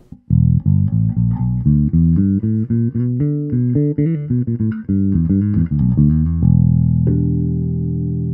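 Ibanez SR500E electric bass with Bartolini BH2 pickups, played fingerstyle in passive mode (EQ bypassed) with the tone control fully open. A run of quick plucked notes is followed, about six seconds in, by a held note that rings on to the end.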